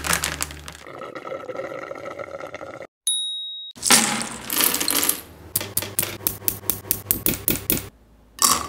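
A thick pink milkshake pouring and fizzing as it foams over the rim of a glass, broken about three seconds in by a short electronic ding. Then pistachios in their shells tumble onto a wooden table in a rapid run of light clicks, about five a second.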